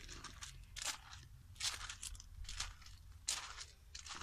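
About five short crunching rustles, roughly evenly spaced, over a low steady rumble: the noise of someone moving among dry, leafy plants while filming.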